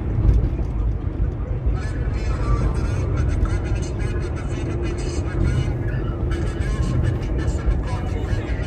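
A voice, with some music, over the steady low rumble of a car driving, heard from inside the cabin.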